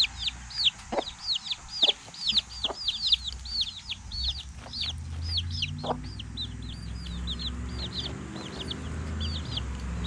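Baby chicks peeping fast and continuously, each peep a short high note falling in pitch, about four a second, thinning out toward the end. From about halfway a low, steady clucking from a hen runs underneath.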